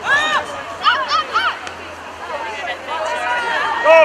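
Sideline voices shouting short, high-pitched calls of encouragement: one at the start, a quick run of several about a second in, and a louder one near the end, over a low background of crowd chatter.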